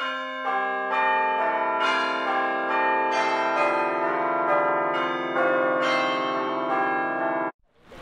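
A peal of several bells ringing, about two strikes a second at different pitches, each note ringing on and overlapping the next. It cuts off suddenly near the end.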